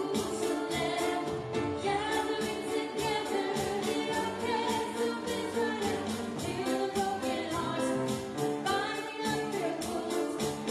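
Live gospel-style worship song: a girl singing lead through a microphone and PA, backed by piano and an electronic drum kit keeping a steady beat.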